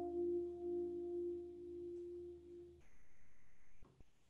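The final chord of a song rings out and fades, then is cut off about three seconds in. A faint high steady tone follows for about a second and ends in a click.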